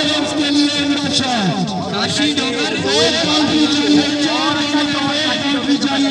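Several men's voices talking over one another throughout, with a steady low drone underneath.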